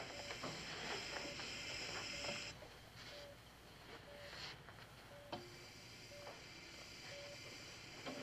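Bedside patient monitor beeping faintly and steadily, about once a second, over a hiss that stops about two and a half seconds in and comes back a little after five seconds.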